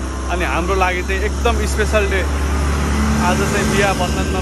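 A large goods truck drives past close by, its engine rumbling low and steady under a man's talking.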